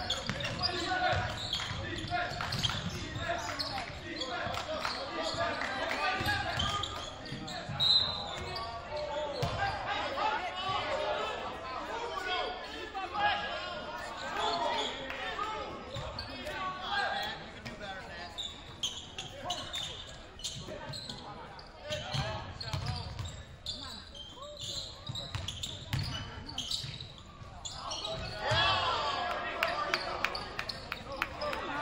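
Basketball dribbled on a hardwood gym floor during live play, the bounces echoing in the large gym, with players and spectators calling out and talking throughout.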